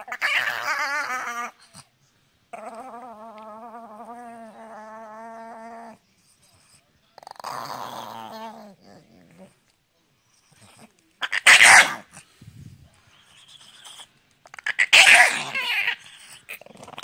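A Chihuahua growling and grumbling while its head is scratched: long, wavering, drawn-out growls in the first few seconds, then two short, loud, harsh snarls near the end.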